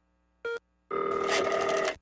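Telephone ring sound effect: a brief beep about half a second in, then a steady, rapidly fluttering ring lasting about a second.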